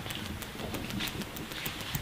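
Hands patting a person's body in percussion massage: a quick, even run of light taps on the muscle.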